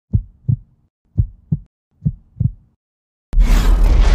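Intro sound effect: three deep heartbeat-like double thumps, then a sudden loud boom a little over three seconds in that goes on as a dense, rumbling hit.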